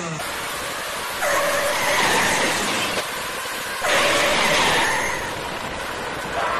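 Racing-car engine sound effect over a steady noisy background, with two passes of high engine whine: the first starting about a second in and running about two seconds, the second starting near four seconds in and lasting just over a second.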